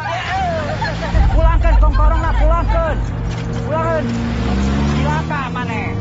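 Excited, shouted voices inside a car over the low rumble of its engine, with the rumble heaviest from about one to three seconds in.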